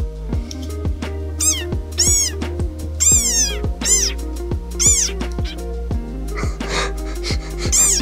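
Desert rain frog giving about six shrill squeaks, each rising and then falling in pitch, the one just after three seconds longer than the rest, over background music.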